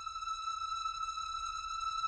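A single steady high synthesizer tone held alone in a break of the electronic track, unchanging in pitch, with faint overtones above it.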